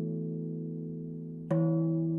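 Steel tongue drum (Meinl Sonic Energy 16-inch Amara in D) played slowly: earlier notes ring on and fade, and a new note is struck about one and a half seconds in.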